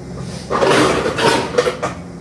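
A person's loud, rough, wordless vocal sound lasting about a second and a half, starting about half a second in.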